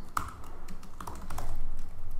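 Typing on a computer keyboard: a run of irregular, quick key clicks.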